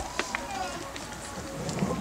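People talking quietly, with a few sharp clicks.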